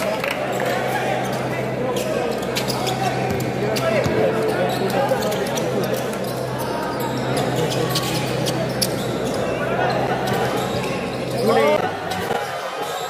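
Basketball dribbling on a hardwood gym floor, the bounces heard over a crowd's steady chatter, with a low hum underneath. A louder flurry of sound comes near the end.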